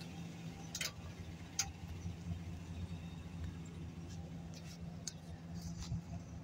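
The van's 6.6-litre V8 idling as a low, steady hum. A few faint footsteps on the pavement tick over it.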